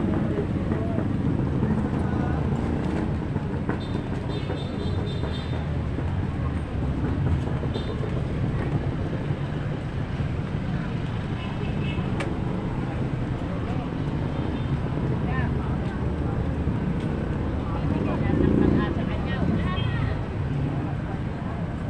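Busy street ambience: a steady rumble of traffic engines, with passers-by talking in the background.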